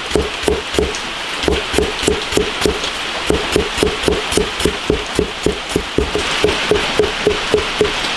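Cleaver slicing ginger into strips on a plastic cutting board: a steady run of knife strokes, about three to four a second, each a sharp knock with a short ringing note.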